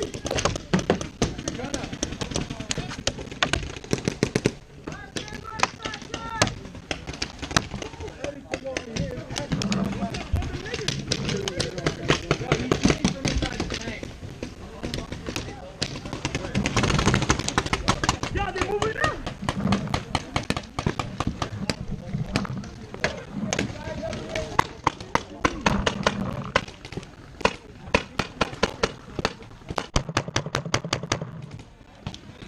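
Paintball markers firing: many sharp pops all through, some coming in quick strings.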